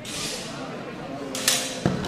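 Steel HEMA longswords in a fencing exchange: a sharp, ringing blade clash about one and a half seconds in, followed a moment later by a duller knock.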